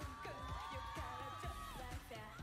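K-pop girl-group dance song playing quietly: a long held note over a steady beat.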